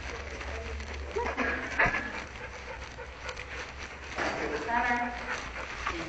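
A dog giving a short, high-pitched whine about five seconds in, over low room hum and scattered knocks.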